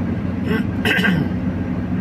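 Steady engine and road drone heard inside the cab of a Fiat Fiorino van cruising along a highway, with two short, brighter sounds about half a second and a second in.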